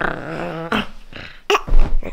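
Playful growling voice sounds from a person playing with a baby, with a brief loud thump near the end.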